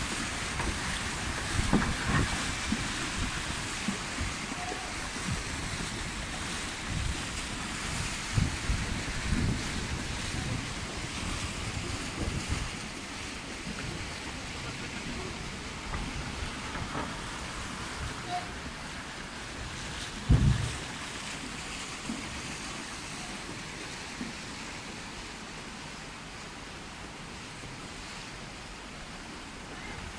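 Steady rush of a shallow river current, with splashing as people wade and haul flat-bottomed wooden boats upstream against it. Wind buffets the microphone in low gusts, the strongest about two-thirds of the way through.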